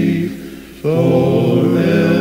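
A cappella gospel quartet singing in four-part harmony. A held chord fades away, and the voices come in together on a new phrase just under a second in.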